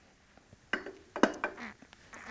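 A few light, sharp clinks of flint and knapping tools knocking together as they are handled: one about three quarters of a second in, then a quick cluster of three just after a second.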